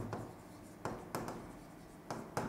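A pen tapping and scratching on the screen of an interactive whiteboard while writing, heard as a few faint short strokes close together about a second in.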